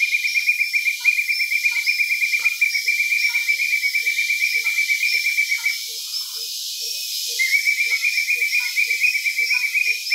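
Rainforest animal chorus: a loud, fast pulsed trill that stops for about a second and a half just past halfway, then resumes, over short low calls repeating about twice a second.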